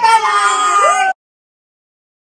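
Several voices, children's among them, making drawn-out wordless calls that slide up and down in pitch, cut off suddenly about a second in.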